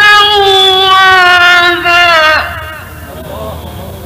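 Male Quran reciter holding one long melodic note at the end of a verse in tajweed style, high and gently falling in pitch, then dropping away about two and a half seconds in. After that only the low hiss of the old recording remains.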